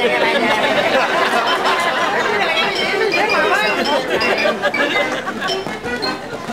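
Several voices chattering over one another, with a few light clinks.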